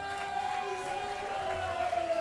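Crowd murmur in a large hall under one long held note that slowly sags in pitch near the end.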